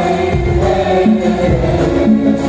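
A girl soloist singing into a microphone, amplified, with a school choir singing along.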